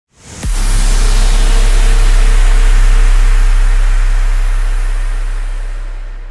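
Cinematic intro sound effect: a short rising sweep into a heavy, deep boom about half a second in, followed by a long noisy rush and rumble that slowly fades away.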